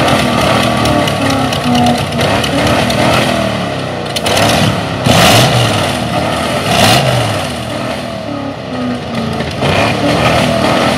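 Rat rod engine revving hard and repeatedly, pitch rising and falling, being blipped to shoot flame from its exhaust. Two loud rushing bursts stand out, about five and seven seconds in.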